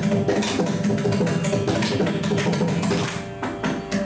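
Mridangam played in fast, dense strokes over a steady drone, the loudness dipping briefly a little past three seconds before a sharp stroke.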